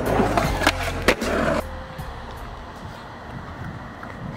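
Skateboard on concrete: sharp clacks of the board about a second in, over a music soundtrack that cuts off suddenly about a second and a half in. The rest is a quieter stretch with a few faint clicks.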